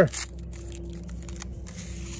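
Faint rustling of a paper sugar packet as it is handled and its sugar is shaken into a cup.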